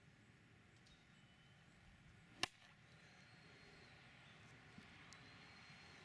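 An iron strikes a golf ball off a turf hitting mat for a chip shot: a single sharp click about two and a half seconds in, against near-silent outdoor background.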